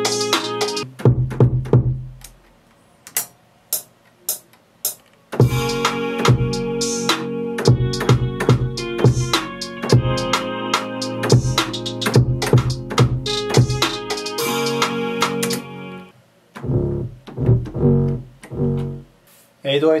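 A trap-style beat playing back in stops and starts: a looping melody with hi-hats and percussion over deep kick and 808 bass hits. Between the loops, the low kick and 808 hits sound on their own twice, with a few single percussion clicks in the quiet stretch near the start.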